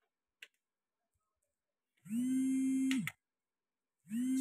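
A faint single click, a button on the DMX-192 lighting console being pressed, then about halfway through a man holds a hesitant 'uh' at one steady pitch for about a second.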